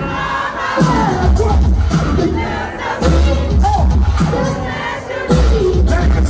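Hip-hop track with a heavy bass beat playing loud over a club PA, with a crowd shouting along.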